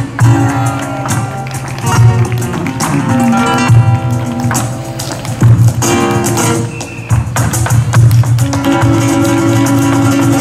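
Live flamenco music: a flamenco guitar playing, with many sharp percussive strikes running through it.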